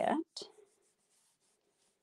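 Faint rubbing of hands smoothing a paper panel down onto a cardstock card base, a light papery hiss.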